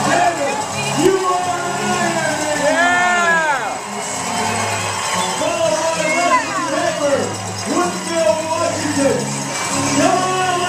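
Loud music playing over a public-address system with a steady bass beat. Voices shout over it with long, rising-and-falling calls, the clearest about three seconds in and again around six to seven seconds.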